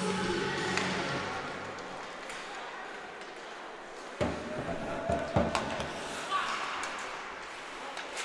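Ice hockey play in an arena: sharp clacks of sticks striking the puck and each other, about four seconds in and again a second later, over the steady hum of the hall and crowd.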